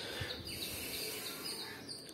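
Birds chirping in the background, a steady run of short high chirps about three or four a second, over low background noise.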